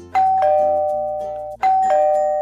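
Two-tone ding-dong doorbell chime, a higher note then a lower one, rung twice about a second and a half apart, over soft background music.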